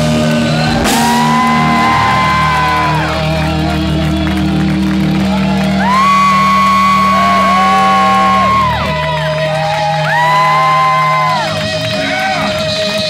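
Live punk rock band playing: a steady low chord under three long held high notes, each sliding up at its start, the middle one the loudest.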